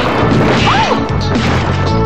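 Movie-trailer crash and smash sound effects over background music, with a brief rising-then-falling squeal about halfway through.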